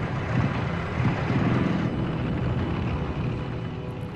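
Military vehicle engines running, a steady noisy drone with a low rumble.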